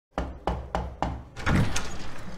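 Four evenly spaced knocks on a door, followed by a longer, louder rattle as the door is opened.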